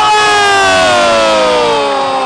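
Commentator's long held shout of "gooool", one sustained note slowly falling in pitch, celebrating a goal, over the noise of a cheering crowd.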